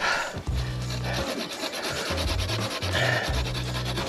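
Small hand saw cutting back and forth through a stick wedged in a dirt bike's rear wheel spokes, a quick run of rasping strokes through wood.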